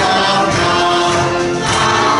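A congregation singing a verse of a gospel hymn together, in held notes.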